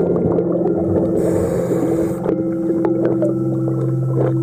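Underwater sound during hull cleaning: a steady low hum with scattered sharp clicks of scraping on the boat's running gear. About a second in comes a rush of diver's exhaled bubbles that lasts about a second.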